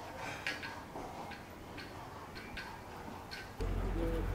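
Sharp, hard clicks of steps on stone paving, about two a second and slightly uneven. Near the end a louder low rumble cuts in.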